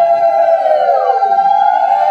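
Several conch shells (shankha) blown together in long, loud, overlapping tones. About halfway through, one tone sags and drops in pitch, then it is blown up again near the end.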